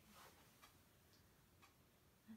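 Near silence with faint, evenly spaced ticks, about two a second.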